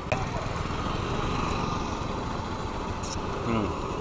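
A motorcycle engine running steadily, a low rumble, with a short hiss about three seconds in.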